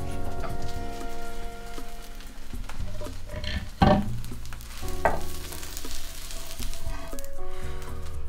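Zucchini pancake sizzling in hot oil in a frying pan, with a few sharp knocks and scrapes of pan and spatula about four and five seconds in as it is lifted and slid out of the pan. The sizzle means the pancake's underside is frying crisp.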